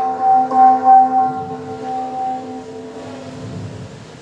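A metal gong ringing, struck again about half a second in, its tone pulsing in loudness and dying away by about three seconds.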